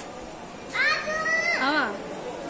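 A child's high-pitched voice calling out about a second into the clip. It holds a slightly rising call for under a second, then drops in a quick, wavering fall, over a low murmur of background noise.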